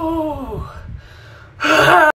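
A man's drawn-out "ooh" sliding down in pitch and fading out, then a loud burst of laughter starting about a second and a half in.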